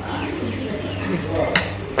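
A bird calling faintly in the background over a steady low hum, with a single sharp click about one and a half seconds in.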